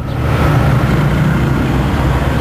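Steady low rumble of a motor vehicle with road noise.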